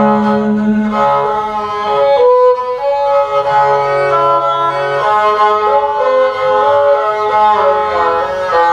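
Tuvan igil, a two-stringed bowed horsehead fiddle, playing a melody over a sustained drone.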